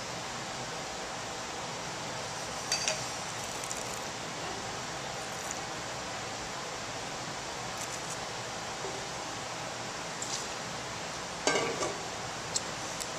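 Steady room hiss, with a few faint clinks and knocks of a wine glass being handled at a counter. Near the end there is a short, louder noisy burst.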